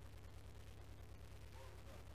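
Near silence: room tone with a low steady hum.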